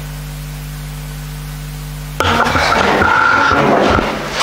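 Steady electrical hum and hiss on the sound feed. A little over two seconds in, the level jumps abruptly to a much louder, dense noise with a high whine in it, as the room sound cuts in.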